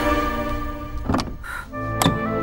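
Film background score of sustained chords fading down. A dull thunk sounds about a second in, and another at the end as new music begins.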